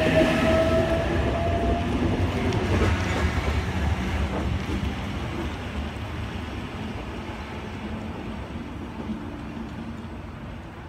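H-set electric multiple unit pulling away from the platform, its motor whine rising slightly for the first two seconds. Under the whine the rumble of its wheels on the track fades steadily as it leaves.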